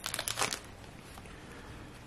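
Upper Deck hockey card pack wrapper crinkling briefly in the first half second as the pack is opened and the cards are pulled out.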